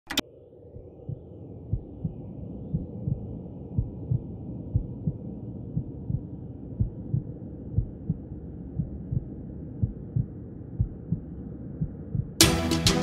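Deep heartbeat-like thumps about once a second, some doubled, over a dark steady hum, fading in after a short click at the start.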